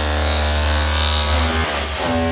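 Electric chisel hammer hammering into a hollow clay-brick wall, chiselling out a recess for a shower niche: a steady, loud buzzing hammer that stops shortly before the end.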